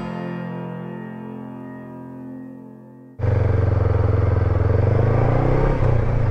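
Music's last notes ring out and fade for about three seconds. Then a sudden cut brings in a Honda NX500's parallel-twin engine running at low road speed, with wind and road noise.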